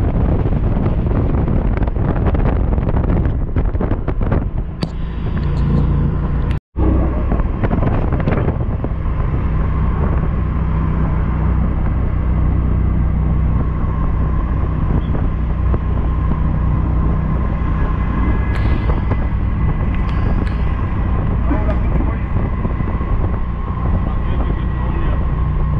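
Steady road and engine noise of a moving vehicle heard from inside it, a low rumble with a faint steady hum. The sound cuts out for a split second about seven seconds in.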